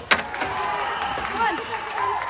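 Faint shouts and chatter of players and spectators in an indoor soccer arena, with one sharp knock just after the start.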